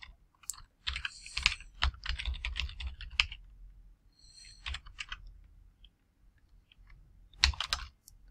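Typing on a computer keyboard: runs of quick keystrokes, densest in the first three and a half seconds, a few more around the middle and a short flurry near the end.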